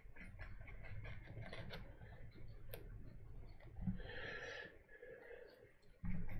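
Faint taps and scratches of a paintbrush working oil paint on canvas, with a longer hiss about four seconds in.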